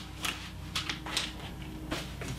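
Bible pages being leafed through: a handful of faint, brief rustles and clicks over a low steady room hum.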